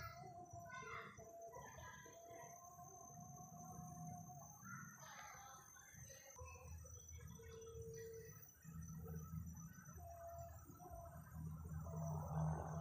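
Faint forest ambience: birds calling with short whistled notes and a few longer held whistles, over a steady high insect drone.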